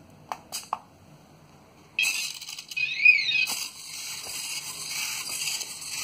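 Otto DIY walking robot's small servo motors starting up suddenly and whirring steadily as it walks, with a short electronic tone that glides up and back down just after they start. Before that, a few light clicks as the robot is handled.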